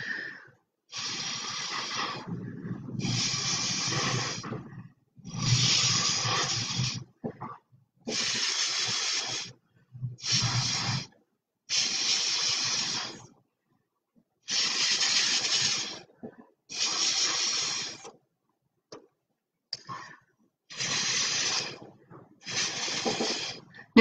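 Breath blown in repeated puffs through a drinking straw to push wet acrylic paint around: about ten hissing blasts, each a second or two long, with short pauses between them.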